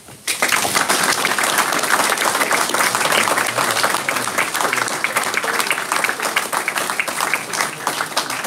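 A small audience clapping, starting just after the beginning and easing off a little in the second half.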